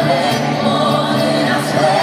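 Live pop concert performance: a woman singing into a microphone over band accompaniment, with several voices singing together.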